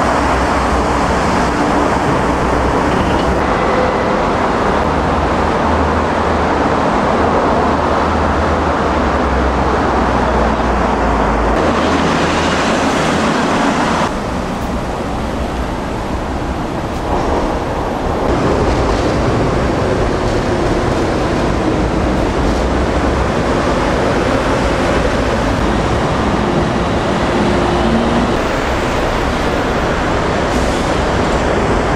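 Steady road traffic noise from passing vehicles, a dense roar that dips briefly about halfway through.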